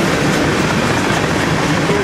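Freight cars of a passing train rolling by: a steady, loud rumble and rattle of steel wheels on rail.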